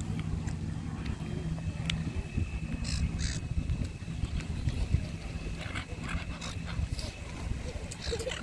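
Gulls giving a few short, harsh squawks over a steady low rumble.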